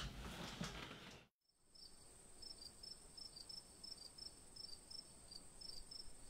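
Faint room tone that cuts off about a second in, followed by faint, high-pitched insect-like chirping repeating about three times a second over a steady high whine.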